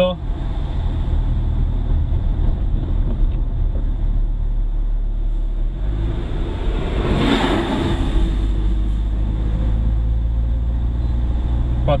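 Steady engine and tyre rumble heard from inside a moving car. About seven seconds in, a passing truck adds a rush of noise that swells and fades over about two seconds.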